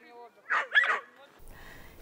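A dog giving two short barks about half a second in.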